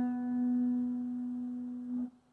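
Acoustic guitar: a single plucked note ringing out and slowly fading, then cut off abruptly right at the end.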